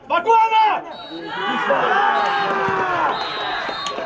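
Football players shouting on the pitch: one loud shout, then several voices calling out at once for about two seconds.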